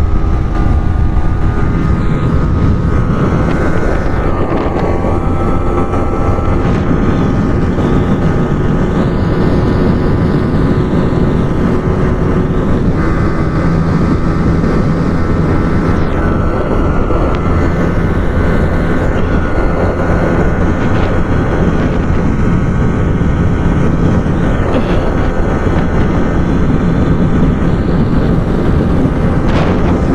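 Yamaha R15 V3's 155 cc single-cylinder engine running steadily at high revs in sixth gear at about 145 km/h, its tone partly buried under loud wind noise on the microphone.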